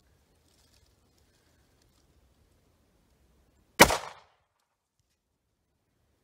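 A single 9mm pistol shot from a Taurus GX4 with a 3.1-inch barrel, about four seconds in, sharp and loud with a short ring-out.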